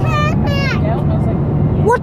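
Steady road and engine rumble inside a moving car's cabin, heard under a child's voice.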